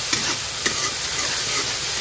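An onion-and-tomato masala with dried red chillies sizzling steadily in hot oil in an aluminium kadai, while a metal spatula stirs it and scrapes the pan with a few light clicks.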